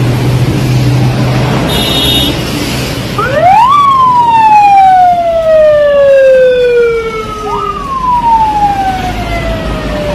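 Police vehicle siren sounding twice, each time rising quickly and then sliding slowly down in pitch, as the convoy drives past. Before it come passing-vehicle engine noise and a brief high beep about two seconds in.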